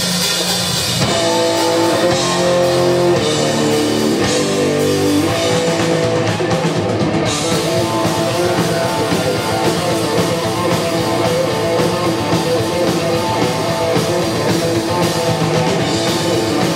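Live heavy metal band playing loudly: a distorted electric guitar riff, from an Explorer-style guitar, over a drum kit. The sound is heard from the audience in a club.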